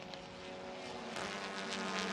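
TCR touring cars' turbocharged four-cylinder engines running at speed, several cars together as one steady drone that grows louder about a second in.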